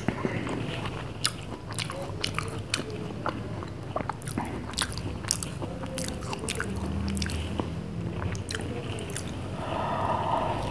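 Close-miked mouth sounds of eating ice cream falooda off a spoon: a steady run of short, sharp clicks and smacks, several a second.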